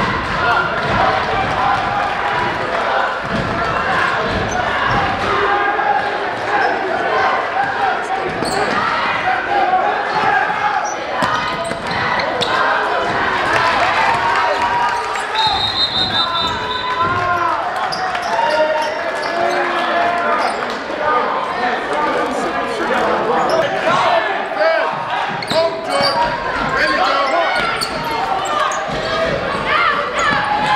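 Basketball game sounds in a gym: a ball bouncing on the hardwood floor amid many overlapping voices shouting from players, benches and crowd, echoing in the large hall.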